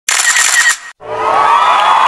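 Intro sound effects: a short burst of clicks, a brief gap just before a second in, then a recorded crowd of children cheering that swells up and holds.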